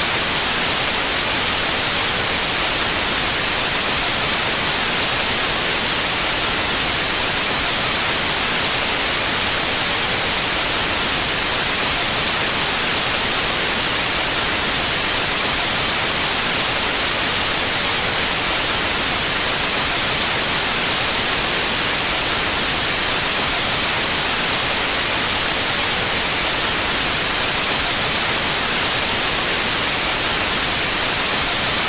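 Loud, steady white-noise static hiss, even and unchanging throughout, strongest in the high frequencies.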